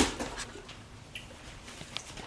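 A sharp knock, then quiet sipping of a thick smoothie from a cup.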